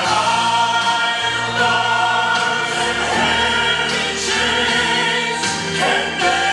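Gospel music: a choir singing sustained chords over instrumental accompaniment, played from a concert video over the room's loudspeakers.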